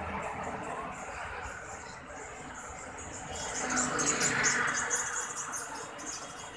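Rapid high-pitched chirping, densest in the second half, over a rise and fall of background noise.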